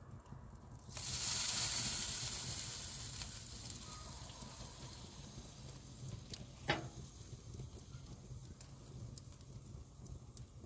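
Orange marmalade and pineapple glaze poured over a duck roasting above a wood fire, sizzling as it runs off onto the hot pan and fire below: a sudden hiss about a second in that slowly fades over several seconds. A single sharp pop comes a little past the middle.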